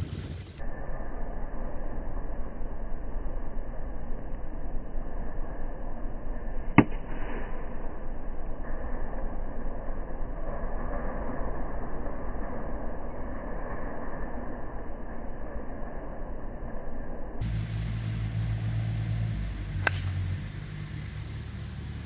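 Slowed-down, deepened sound of a golf tee shot: a steady low rushing noise with one sharp crack of the club striking the ball about seven seconds in. Near the end the sound returns to normal speed, with a low wind rumble and one more sharp click.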